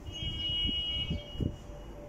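A single steady, high-pitched tone lasts about a second and then fades, with a few low thumps underneath.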